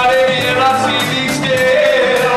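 Live rock band playing a song with a steady drum beat of about four strokes a second, with sung notes held and sliding over the band.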